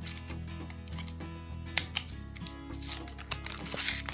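Plastic blister packaging of an EOS lip balm crinkling and snapping as it is pulled open by hand, with a sharp click a little before halfway and a burst of rustling near the end, over steady background music.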